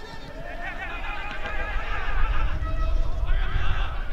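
Footballers' shouts and calls carrying across an open pitch, several raised voices overlapping. A low rumble underneath grows louder about two seconds in.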